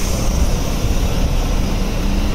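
Large lorry driving past at close range: a steady, low engine and tyre noise.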